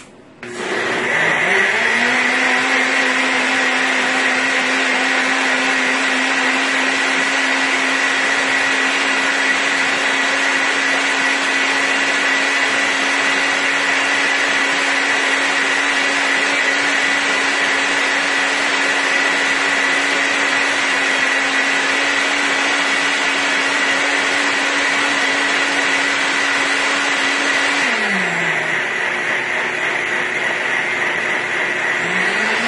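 NutriBullet Rx blender motor puréeing strawberries and lemon juice. It spins up to speed within the first two seconds, runs at a steady pitch, and its pitch drops near the end.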